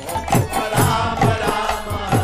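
Kirtan in full swing: a mridanga drum plays quick bass strokes that slide down in pitch, about four a second, over a steady harmonium drone and bass guitar. Sharp jingling strokes, likely hand cymbals, sit on top of group chanting.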